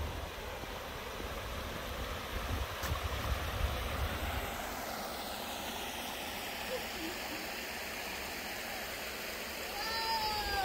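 Steady rush of creek water spilling over a low concrete weir, with wind buffeting the microphone in the first few seconds.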